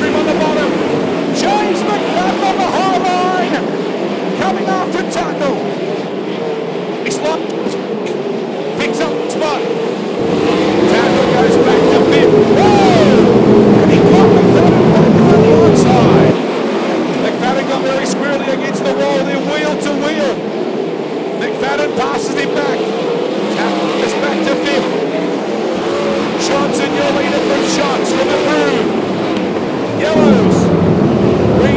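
A pack of winged sprint cars racing on a dirt oval, several methanol-burning 410-cubic-inch V8s at full throttle, their pitch rising and falling as they pass. About a third of the way in the sound swells louder and fuller, then drops off abruptly about halfway through.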